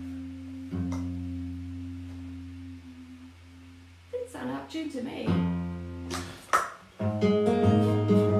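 Acoustic guitar being retuned: an open chord is strummed and left to ring out, strummed again about a second in and allowed to fade, while a tuning peg is adjusted. Regular strumming starts about a second before the end.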